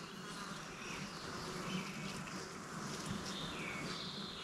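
Faint insect buzzing, steady throughout, with a few faint bird chirps.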